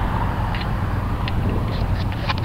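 Steady low rumble of wind buffeting the camera microphone outdoors, mixed with a hum like road traffic, with a few short high ticks.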